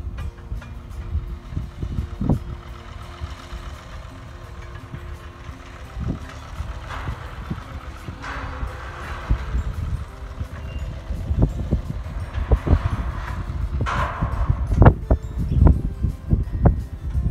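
Ruston-Bucyrus RB30 dragline working at a distance, its engine and winch gear running with two louder stretches about halfway through and near the end, with wind buffeting the microphone.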